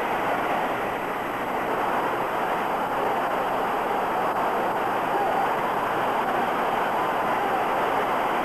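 Steady crowd noise: a large audience's mingled voices blending into an even rumble, with no single voice standing out.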